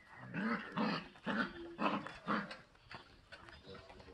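Five-week-old German Shepherd puppies barking in play, about five short barks in the first two and a half seconds, then quieter.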